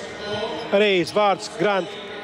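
A man's voice, a TV commentator, speaking over the hall's background, with a basketball bouncing on the court during warm-ups.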